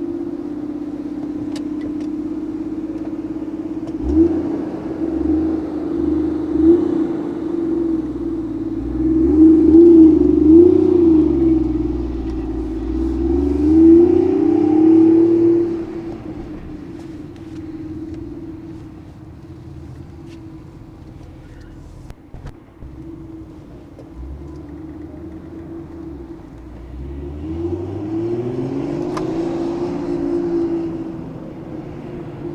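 Toyota Soarer's single-turbo 1JZ-GTE straight-six, breathing through an aftermarket muffler, idles and then pulls away. Its revs rise and fall through the gears, loudest in the middle. It grows fainter as the car drives off, then revs up again near the end.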